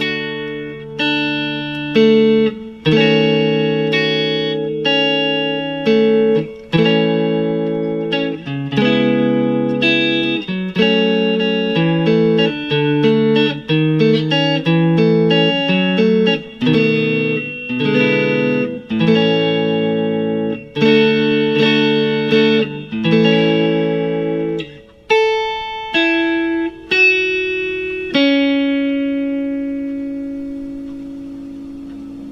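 Electric guitar, a Fender Stratocaster, playing a chord progression in A major (A, Amaj7, A7, D, D#m7b5, C#m7, F#m, B7, E7) that backs the song's guitar solo. Each chord is struck and left to ring out, and a few single notes sound near the end.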